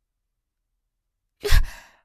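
Silence, then about a second and a half in a woman's short, breathy sigh close to the microphone, which fades quickly.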